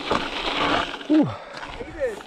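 Wind on an action camera's microphone and tyres rolling over a dirt trail as a mountain bike rides down singletrack, dying away about a second in. A man's short 'oh' follows.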